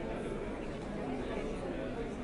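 Many people talking at once in group conversations around tables: a steady babble of overlapping voices, none standing out.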